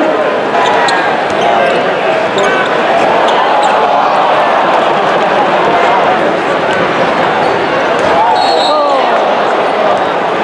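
Arena crowd chatter with a basketball bouncing on the hardwood court during live play. A short, high referee's whistle sounds near the end.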